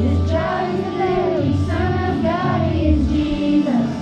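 A group of children singing a Christmas song into microphones over musical accompaniment with a low bass line.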